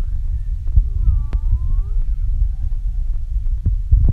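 Low rumbling and thumping throughout, with a small child's high voice making a few short wordless sounds that slide up and down, and a sharp knock near the end.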